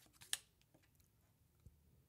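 Trading cards handled in a stack: one short, crisp card snap about a third of a second in as a card is slid off the front, a few faint ticks after it, and a soft tap near the end; otherwise near silence.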